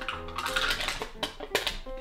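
Foil lid being peeled off a plastic yogurt cup, with crinkling and a few sharp clicks, over instrumental background music.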